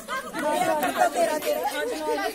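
Several women's voices chattering at once, talking over one another in a loose crowd.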